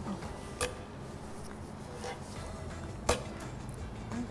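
Two short sharp clacks about two and a half seconds apart: five-stones jacks pieces landing on a wooden tabletop during a throw-and-catch turn. Faint background music runs underneath.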